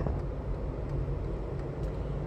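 Steady low rumble of a car heard from inside the cabin: engine and road noise with no other distinct events.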